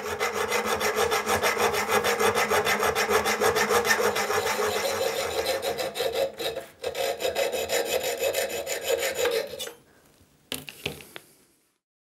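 A hacksaw cutting through a 3 mm thick copper plate held in a vise, in quick, steady back-and-forth strokes. There is a short break about six and a half seconds in, and the sawing stops near ten seconds.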